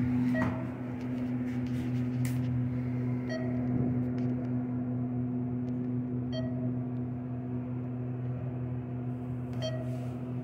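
ThyssenKrupp traction elevator car in motion: a steady hum, with four short electronic beeps about three seconds apart, the car's floor-passing chimes.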